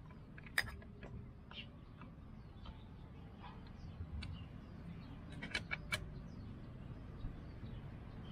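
Faint metallic clicks and taps as a long hex wrench turns a bicycle pedal loose from its crank arm. There is a sharp click about half a second in and a quick run of clicks around five and a half to six seconds in.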